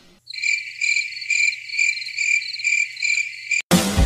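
Crickets-chirping sound effect: a steady run of high chirps repeating about twice a second, used as the comedy cue for an awkward silence. It cuts off near the end as music comes in.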